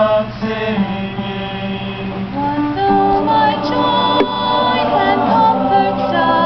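A youth choir singing a hymn in long, held notes that move from pitch to pitch.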